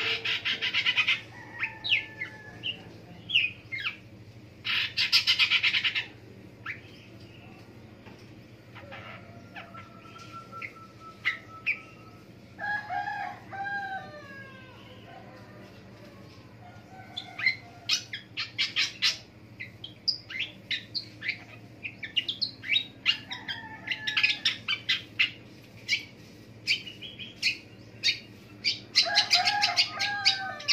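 Long-tailed shrike (pentet) singing a varied song: bursts of harsh, rasping chatter near the start, about five seconds in and again near the end, with quick clicks, short whistled notes and down-slurred calls between them.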